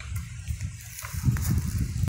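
Low rumbling noise on the microphone, strongest in the second half, with faint rustling and a few small clicks.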